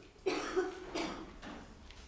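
A person coughing several times in quick succession, the first cough loudest.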